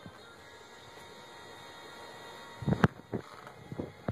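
Quiet room tone, then near the end a short run of knocks and taps from a baby's hands and knees on a tiled floor and cushion as she crawls: one sharp knock, the loudest, followed by a few lighter taps.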